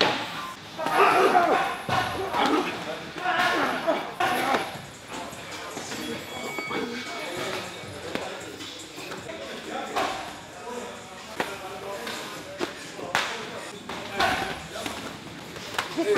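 Men's voices and laughter, then a handful of sharp thuds of boxing gloves landing on pads and bodies in the second half.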